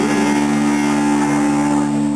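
A rock band's chord held and ringing out steadily on electric guitars and bass through their amplifiers, sustained without new strums as the song ends.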